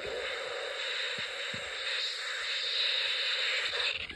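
Steady static hiss from a Snap Circuits Extreme AM radio through its small speaker, with no station tuned in. The crude radio is getting poor reception and picks up nothing but static.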